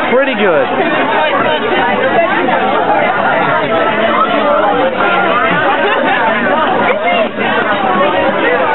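Loud, steady chatter of a large group of people talking over one another at once, no single voice standing out.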